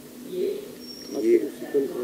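A man speaking in short phrases, with a brief faint high thin tone, like a whistle, about a second in.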